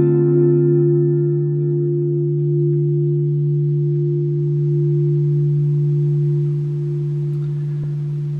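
Clean Telecaster-style electric guitar ringing out on a single strummed D minor seven chord at the fifth fret. The bright upper notes fade within about two to three seconds, while the low notes keep sounding steadily.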